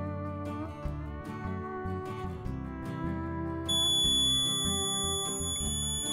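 Background guitar music, then about two-thirds of the way in the piezo buzzer of an LM358 op-amp temperature-alarm circuit starts a steady high-pitched tone as the powered circuit's alarm output switches on.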